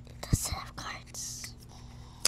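A short knock, then a person whispering for about a second.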